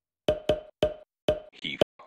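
Intro music made of short, dry wood-block-like hits on one pitch, about five or six of them in a quick, uneven run.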